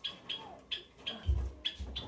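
A small bird chirping: short high chirps repeated several times, roughly two or three a second, with two low thumps in the second half.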